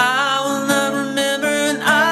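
A man singing with strummed acoustic guitar. He slides up into a long held note and moves to a new note near the end.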